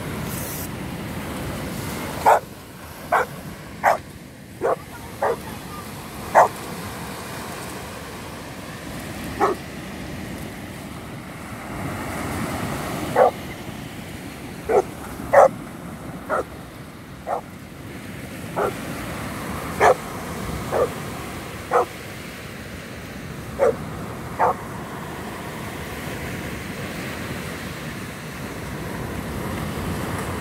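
Cane Corso barking in short, sharp single barks, about eighteen in all, coming in bunches with pauses between, the excited barks of a dog playing for a stick. Steady surf and wind noise lies underneath.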